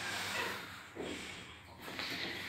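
Schindler elevator doors sliding shut, heard faintly, over the low steady hum of the elevator car.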